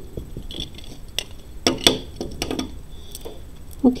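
Glass millefiori beads on a necklace clicking against each other as it is picked up and handled: a scatter of light, irregular clinks.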